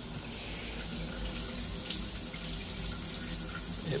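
Water running steadily into a tiled shower stall and down its floor drain, a flow test of the drain just snaked clear of a hair clog.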